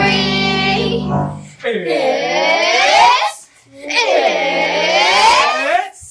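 A backing music track with a held chord stops about a second in. Then a group of children gives two long drawn-out cheer shouts, each sweeping up and falling back in pitch.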